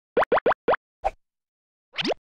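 Cartoon pop sound effects: four quick rising-pitch pops in close succession, then a softer fifth pop about a second in, and another rising pop near the end.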